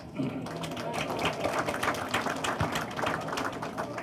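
Audience applauding: a dense patter of scattered claps.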